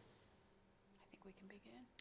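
Near silence, then faint, low speech starting about a second in.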